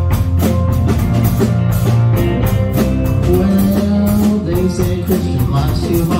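Rock band playing: a drum kit keeps a steady beat under electric guitar and bass guitar.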